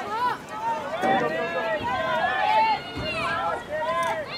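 Several high voices shouting and calling out over one another at a soccer game, spectators and players yelling as play surges toward goal. The shouting swells about a second in and stays loud for a couple of seconds.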